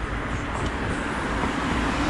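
Street traffic noise: a car driving past close by, its tyre and engine noise growing slightly louder toward the end.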